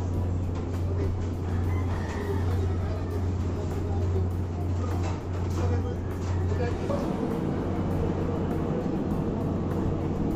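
A steady low hum with people talking over it; the hum drops away about seven seconds in.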